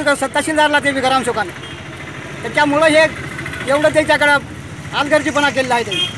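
A man talking in four bursts over a steady low background hum.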